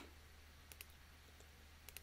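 Three faint computer mouse clicks, a quick pair a little before one second in and one more near the end, over near silence with a low steady hum.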